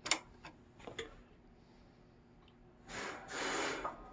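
JUKI DDL-9000C industrial sewing machine powering up: a sharp click, two fainter clicks within the first second, then about three seconds in two short rushes of noise as it starts.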